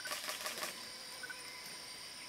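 Steady high-pitched drone of insects, with a quick run of dry clicks in the first half second.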